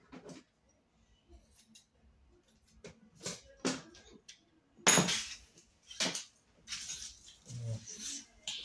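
Pieces of a torn-up fake wallet being handled and broken up on the floor: a few sharp cracks and knocks, the loudest about five seconds in, then rustling.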